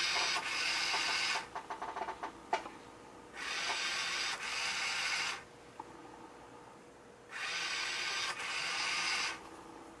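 Small DC gear motor on a rover wheel, driven by an H-bridge board, whirring in spells of about two seconds, each with a brief hitch partway through as it switches from forward to reverse. Between the spells are pauses of about two seconds while the driver sits in its brake and float states. A patch of rapid clicking comes a little after the first spell.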